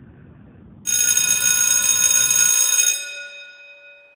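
A bright, high bell-like ringing tone with many steady overtones starts suddenly about a second in, holds for about two seconds, then fades away.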